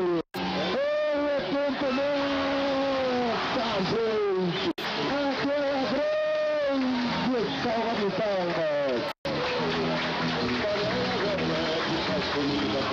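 A song: a singing voice holding long, sliding notes over instrumental accompaniment. The sound cuts out briefly three times, about every four and a half seconds.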